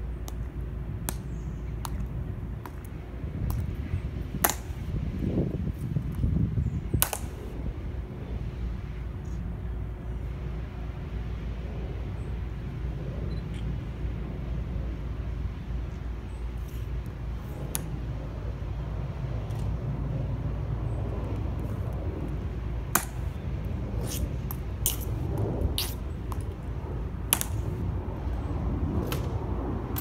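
Scattered sharp clicks, several in quick succession in the last third, over a steady low outdoor rumble.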